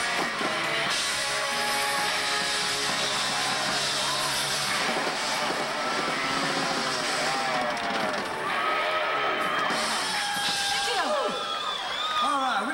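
Live rock band playing loud through a PA, electric guitar prominent, with crowd voices shouting over it; in the second half, shouted voices stand out more against the music.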